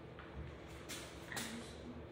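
Dry-erase marker writing on a whiteboard: a few short scratchy strokes over faint room noise.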